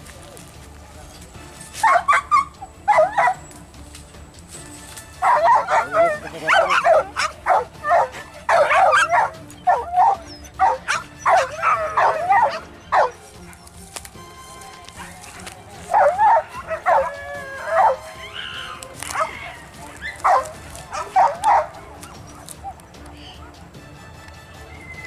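Hunting dogs yelping and barking in rapid, high-pitched bursts. There is a short flurry about two seconds in, a long run of yelps through the middle, and another flurry later on.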